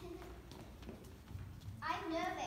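Footsteps of several children walking and running across a stage floor: light, irregular knocks and soft thuds. A child's voice starts near the end.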